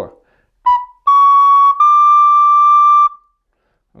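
Plastic soprano recorder playing three rising notes, B, C-sharp and high D: a short B about two-thirds of a second in, then a longer C-sharp and a held high D that stops about three seconds in.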